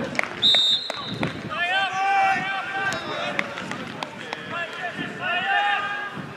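Referee's whistle blown once for kick-off, a short high blast about half a second in, followed by men shouting calls.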